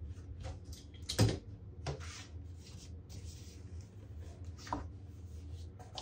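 Handling sounds of a rubber brayer and paper on a gesso panel: soft rolling and rustling, with a few sharp knocks, the loudest about a second in, over a low steady hum.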